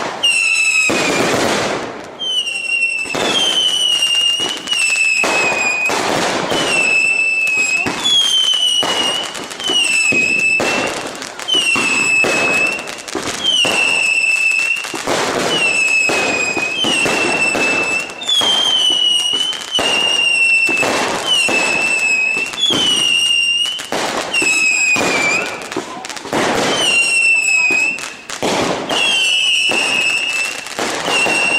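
A firework barrage firing shot after shot, about one a second. Each sharp crack is followed by a high whistle of about a second that dips a little in pitch and then holds.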